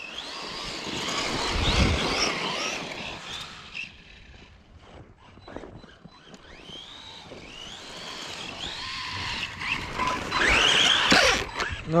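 Typhon 3S RC buggy's brushless electric motor whining as it revs up and down in bursts of throttle through deep snow, getting louder as the car comes back near the end.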